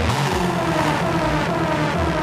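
Techno DJ mix: the deep bass cuts out at the start and a noisy synth sweep glides slowly downward in pitch over sustained synth tones.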